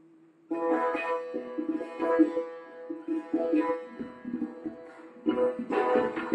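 Live Persian classical music. A plucked string instrument enters about half a second in and plays a phrase of sharply struck notes, pauses briefly, then starts again near the end. Before it enters there is a faint held tone.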